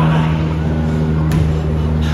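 A steady low-pitched hum, with a faint click just over a second in.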